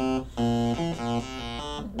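A circuit-bent Atari 'Space Cavern' synth playing a repeating stepped melody, driven by an 8-step analog sequencer of the Baby 10 design: steady electronic notes jumping to a new pitch a few times a second, in odd, off-key intervals.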